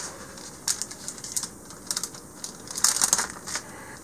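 Spatula spreading soft butter across wax paper on a metal cookie sheet: irregular short ticks and light scrapes, busiest about three seconds in.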